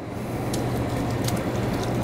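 Risotto cooking over high heat in a large stainless-steel pot on an induction hob, a steady fine crackling sizzle as sliced cèpes are tipped in, over a faint steady low hum.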